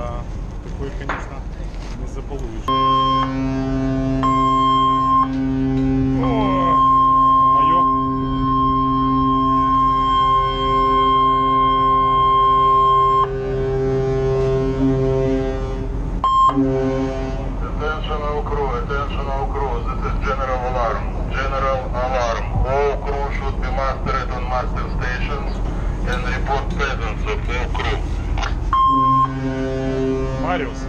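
Ship's general alarm: a long, steady blast of the tanker's whistle with a higher alarm tone cutting in and out over it, starting about three seconds in and stopping about sixteen seconds in. Voices follow, and the steady tones sound again briefly near the end.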